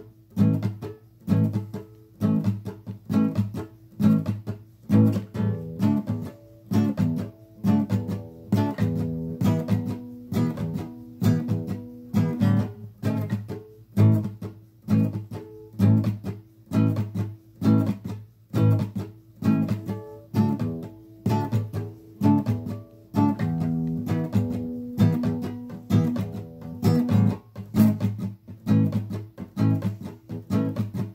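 Acoustic guitar strummed in a steady rhythm, with the chords changing every few seconds; an instrumental stretch with no singing.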